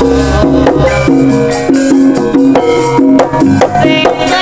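Javanese gamelan ensemble playing the accompaniment for a Gambyong dance: struck bronze gongs and metallophones sounding steady held notes, punctuated by drum strokes.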